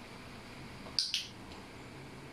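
Two quick, sharp, high-pitched clicks close together, about a second in, over quiet room tone.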